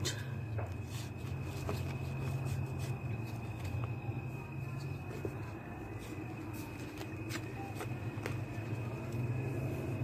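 Faint scuffs and light clicks of a hand pushing chrysanthemum cuttings into the potting soil of a plastic pot, over a steady low hum and a thin high whine.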